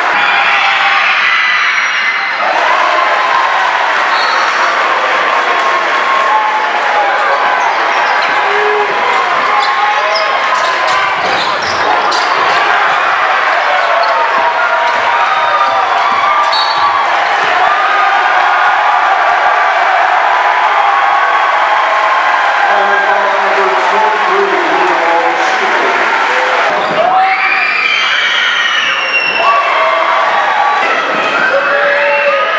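Live basketball game sound in a crowded gym: a steady din of crowd voices and shouts, with a basketball bouncing on the hardwood floor.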